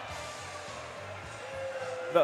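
Background music playing at a low, steady level.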